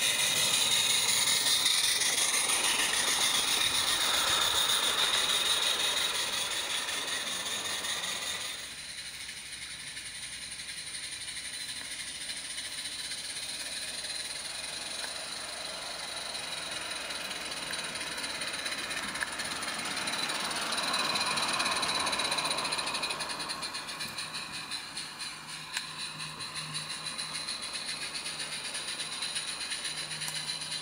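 Small live-steam garden-railway locomotive running with its train: wheels rattling over the track and steam hissing, loudest in the first eight seconds as it passes close, then fainter. A steady low hum joins in for the last seven seconds.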